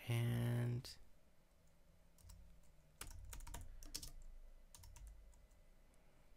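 A brief, steady hum from a man's voice, the loudest sound, then a run of keystrokes on a computer keyboard from about two seconds in until near the end.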